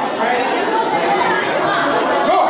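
Overlapping chatter of many people talking at once, a steady babble of voices with no single clear speaker.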